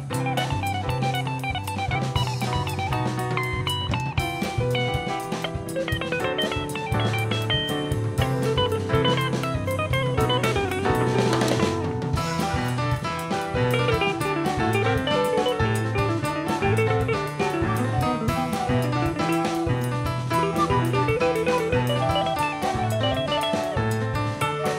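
A band playing an instrumental passage on drum kit and guitar over a steady, repeating low line, with a cymbal wash about halfway through.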